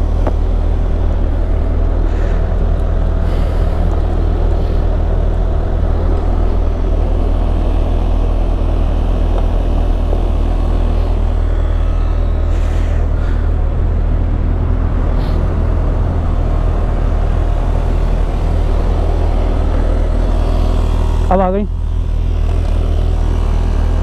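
Portable 12-volt electric air compressor running steadily as it inflates a repaired tubeless scooter tyre up to about 30 PSI.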